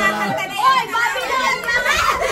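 A group of people talking and calling out excitedly over one another, in lively voices.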